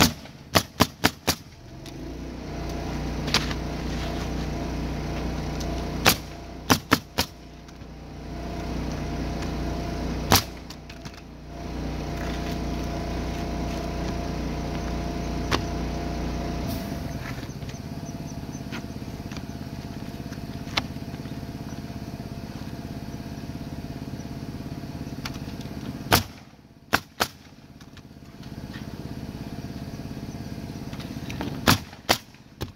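Pneumatic roofing nailer driving nails through asphalt shingles: a quick run of about five shots at the start, then single shots and small groups spread through, and three close together near the end. A steady mechanical hum runs underneath.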